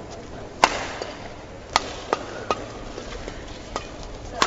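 Badminton racket strikes on a shuttlecock in a rally: two sharp hits about a second apart, the first the loudest, then a few lighter knocks, over the steady hum of an arena.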